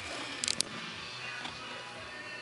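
Background music playing at moderate level, with a few light clicks about half a second in.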